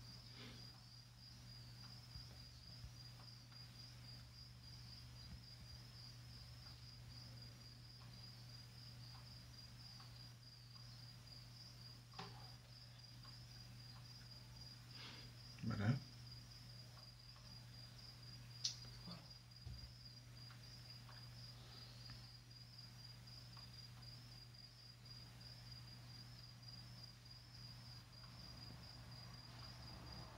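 Quiet room tone with a steady, high-pitched chirping of a cricket, pulsing evenly a few times a second over a low hum. There are scattered faint clicks and one brief louder sound about 16 seconds in.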